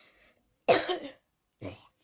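A person coughing: one loud sudden cough about two-thirds of a second in, then a smaller one near the end.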